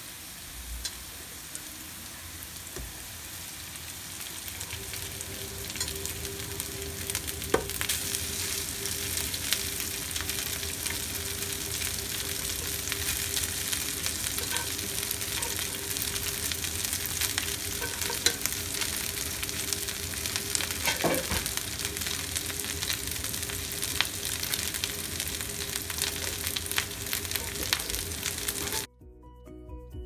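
Onions and then cooked rice frying in oil in a non-stick pan, a steady sizzle that grows louder a few seconds in, with scattered clicks and scrapes of a wooden spatula stirring. The sizzle cuts off suddenly just before the end, giving way to music.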